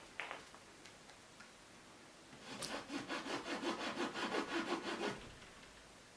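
Bristle paintbrush scrubbed on an oil canvas: one short stroke at the start, then from about halfway a rapid back-and-forth scrubbing, about six strokes a second, that stops about a second before the end.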